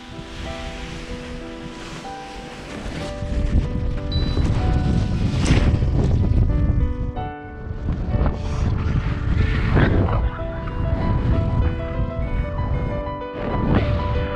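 Wind rushing and buffeting on an action camera's microphone as a paraglider takes off and flies, growing louder a few seconds in and surging several times. Soft piano music plays underneath.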